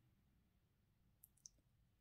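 Near silence, broken by two faint clicks in quick succession about a second and a quarter in, from a tarot card being laid down on the table.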